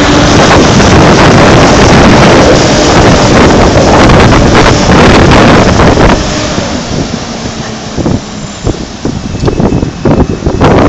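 Wind buffeting the microphone, loud and rough, over a double-decker bus pulling away and passing street traffic. The wind eases about six seconds in, leaving the traffic.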